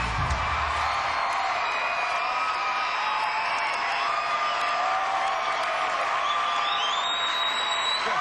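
Large studio audience cheering, whooping and applauding at the end of a live song performance. The band's final bass-heavy chord stops in the first second.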